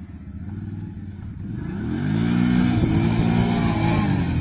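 ATV engine getting louder as the quad approaches, then revving up about halfway through and holding high revs as the rider lifts it into a wheelie.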